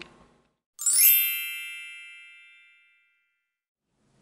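A single bright chime sound effect marking a video transition: one struck ding that starts suddenly about a second in and rings away over about two seconds.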